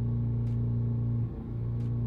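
Ford Focus 2.0-litre four-cylinder engine running at a steady raised speed while the transmission module performs its initial clutch adjustment in adaptive learning, with a brief dip about halfway through.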